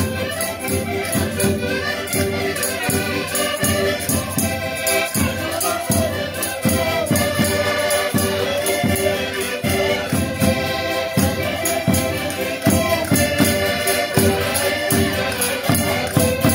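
Several Portuguese diatonic button accordions (concertinas) playing a lively Minho folk tune together over a steady bass-drum beat.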